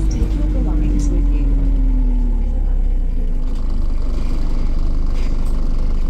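Interior drivetrain noise of a Volvo B5LH hybrid double-decker bus whose turbo is leaking: a steady low rumble, with a tone that falls in pitch over the first two seconds or so as the bus slows, then a higher whine coming in about midway.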